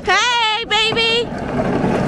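A high-pitched voice calls out twice in the first second or so with no clear words, then only a steady low background hum.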